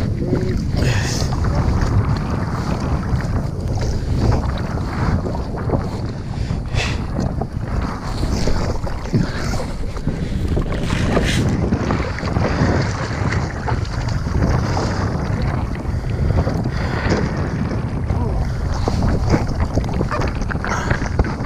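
Wind buffeting the microphone just above choppy sea water, with small waves lapping and splashing irregularly around a water skier floating with a slalom ski.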